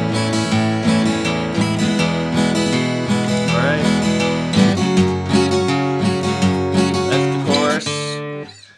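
Steel-string acoustic guitar strummed in a steady rhythm, its chords ringing between strokes.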